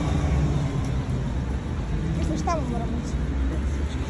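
City street traffic noise, a steady low rumble of passing cars, with a brief voice of a passer-by about halfway through.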